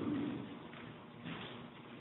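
A pause in a man's speech: his voice trails off in the first half second, leaving faint room sound.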